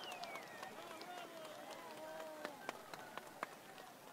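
Faint, scattered hand-clapping from a crowd, with a few sharp single claps in the second half, over distant voices calling out.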